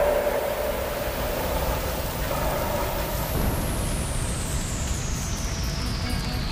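Sound-design fire effect: a steady rushing noise, with a thin high whistling tone that slides slowly downward in pitch.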